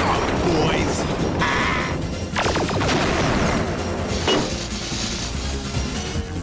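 Cartoon action soundtrack: dramatic background music under crashing impact sound effects, a big ground-pound slam right at the start and another crash about two and a half seconds in.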